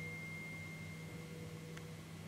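Faint sustained tones: a high one fading out just after the start and a lower one held steady throughout, over a low steady hum.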